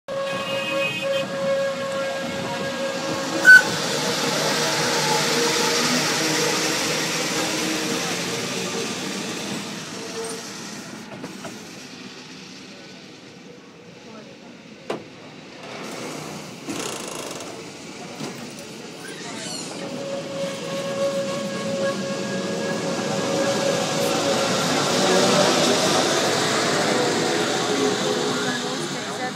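Electric rack (cog) railway train on Mt Rigi running along the toothed track: a steady motor whine over the rolling rumble of the car, easing to a quieter stretch around the middle and building again near the end, with a sharp click a few seconds in.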